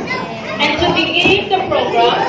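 Many children's voices chattering at once as a group of young pupils settles into their seats.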